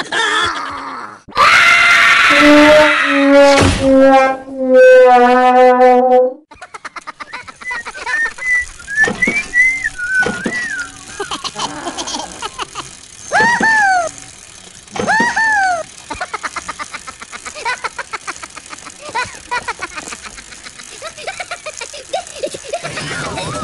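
Cartoon soundtrack of cartoon voices and effects. It opens with a loud vocal cry and a run of held notes stepping down in pitch, then goes to a steady rapid ticking with short rising-and-falling whistled calls, twice close together near the middle.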